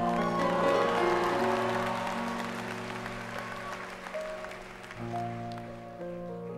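Audience applauding over the slow opening chords of a grand piano; the clapping is strongest in the first couple of seconds and thins out as the piano carries on alone.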